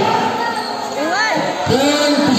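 A basketball bouncing on an indoor court during play, in a reverberant hall, under a voice and music.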